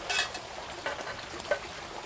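A small stream trickling steadily, with a short rustle just after the start and a couple of faint ticks later on.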